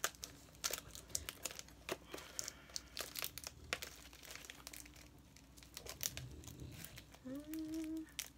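Packaging crinkling and rustling in many short crackles as a mailing envelope and its wrapping are opened by hand. A brief hummed tone comes in near the end.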